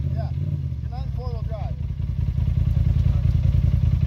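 Polaris RZR side-by-side engine running at low revs, a steady low rumble.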